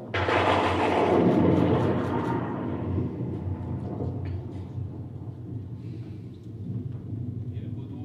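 A theatre audience breaks into laughter all at once, loudest in the first two seconds, then slowly dies away.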